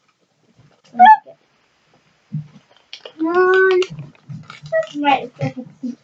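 Young girls' voices without clear words: a short rising squeal about a second in, a long held vocal note around the middle, then brief broken chatter.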